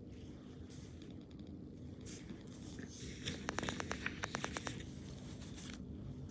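Low steady room hum, with a quick run of about ten light clicks lasting just over a second, about three and a half seconds in.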